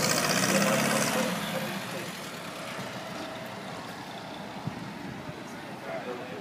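A motor vehicle's engine running close by, loudest in the first second or so and then fading away into steady street noise.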